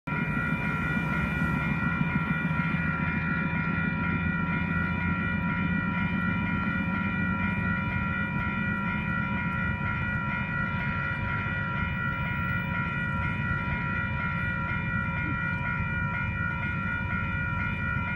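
Level-crossing warning bells ringing steadily over the low rumble of an approaching DXC-class diesel-electric locomotive.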